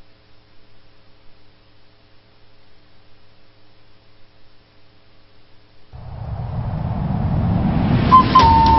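Low, steady electrical hum from the sound system. About six seconds in, a rumbling noise begins and swells steadily louder: the rising intro of a music track fading in.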